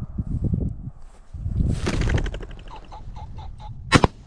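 Footfalls in tall grass, then a pheasant flushing with a loud burst of fast wingbeats about a second and a half in. A single 12-gauge over-and-under shotgun shot comes right at the end and is the loudest sound.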